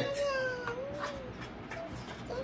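A young child's high voice holding a drawn-out, wordless sound for about a second, dipping and rising slightly in pitch before it stops.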